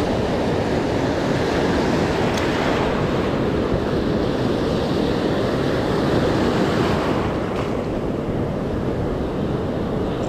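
Steady rush of ocean surf breaking and washing over the sand, with wind on the microphone.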